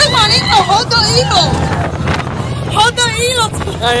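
Roller coaster riders screaming and yelling, high voices gliding up and down in two bursts, near the start and again about three seconds in. Underneath runs a steady low rumble of the moving train and wind on the microphone.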